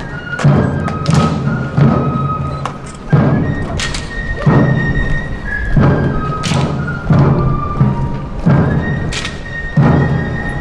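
Marching drums beating deep, heavy thumps roughly once a second, under long held high notes from wind instruments.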